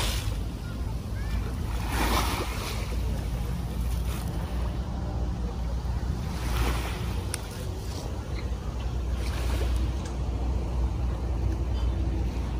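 Wind rumbling on the microphone over small waves lapping at the shoreline, with broader washes of noise swelling up every three to four seconds.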